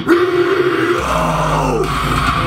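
Metalcore song with a growled vocal over heavy electric-guitar backing. A held note runs for about the first second, then a deep low note sets in with falling pitch slides.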